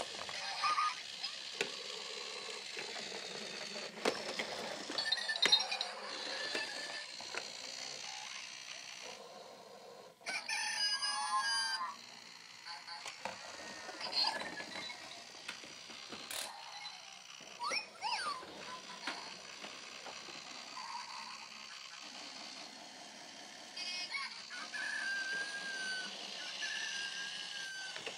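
Zhu Zhu Pets battery-powered toy hamsters running through a plastic tube and wheel, giving high electronic squeaks, chirps and short warbling tune snippets over the clatter of plastic, busiest about ten to twelve seconds in.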